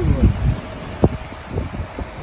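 Wind buffeting the microphone with a low rumble from a vehicle moving through floodwater, a faint voice near the start and a sharp knock about a second in.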